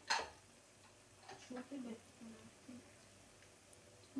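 One sharp click right at the start, then a few quiet spoken words.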